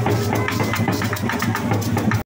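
Live Colombian Caribbean folk drumming: a double-headed tambora and a hand-held drum struck in a fast, steady rhythm for street dancing.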